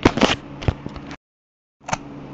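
Sharp plastic clicks and knocks from a toy Omnitrix watch being handled, its dial pressed down. Several come in the first second. The sound then cuts out completely for about half a second, and another click follows near the end.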